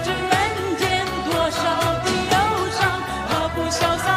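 A woman singing a fast-paced Mandarin pop song into a microphone, her voice wavering with vibrato over a band with a quick, steady drum beat.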